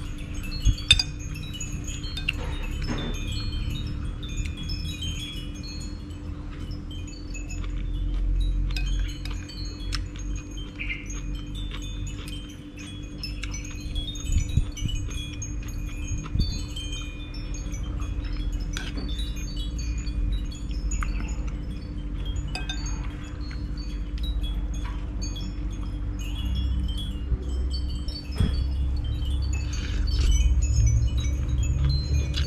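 Wind chimes tinkling irregularly with many short high notes. Now and then a spoon clinks against a ceramic bowl, over a steady low hum and rumble.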